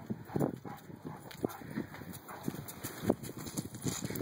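Irregular footfalls of a three-legged St. Bernard and a person walking across concrete and onto gravel.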